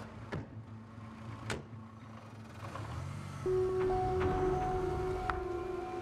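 A few sharp knocks of police-car doors being shut over a low vehicle rumble, then a low held note of dramatic score music comes in about halfway through and is the loudest sound.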